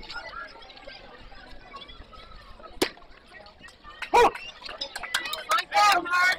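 Players and spectators calling out at a youth baseball game. About three seconds in there is one sharp pop as the pitch reaches home plate, followed by loud shouts.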